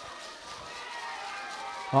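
Faint, distant high-pitched voices of players calling out on the pitch, under a low outdoor background hum.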